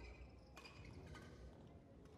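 Near silence: faint ambience of a large sports hall, with a few faint short ticks and squeaks.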